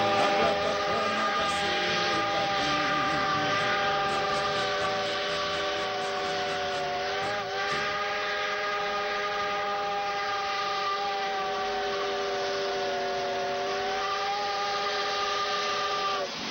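Steam locomotive's chime whistle blowing one long, steady multi-note chord, broken briefly about halfway through and cut off abruptly at the end.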